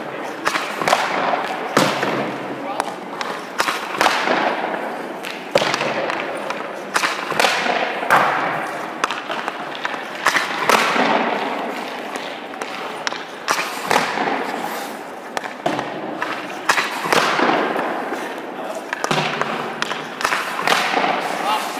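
Ice hockey pucks shot one after another with a stick, several shots over the stretch, each a sharp crack of blade on puck followed by knocks as the puck hits the goalie's pads, with skate blades scraping the ice in between. The impacts echo off the hard walls of an indoor rink.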